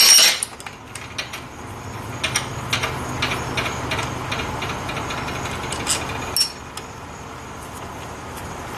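A steel bar clanks down onto a steel workbench at the start. Then come light metallic clicks and ticks as the Allen screws and small parts of a Wilwood four-piston brake caliper are handled at the vise, over a low steady hum.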